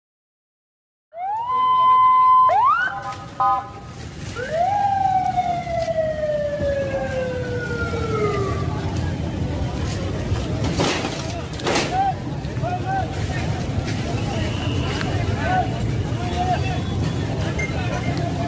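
Ambulance siren over street noise and crowd voices. It rises and holds a tone, sweeps up and down quickly a few times, then falls in one long wail over about four seconds. Short repeated siren chirps sound later.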